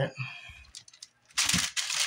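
Sharp kitchen knife slicing down through a peeled pineapple beside the core: a brief, loud, scraping cut about a second and a half in.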